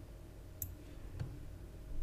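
Two faint computer mouse clicks, about half a second apart, over a low steady hum of room and microphone noise.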